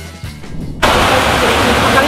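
Background rock music fading out. About a second in it gives way abruptly to a loud, steady hiss of heavy rain.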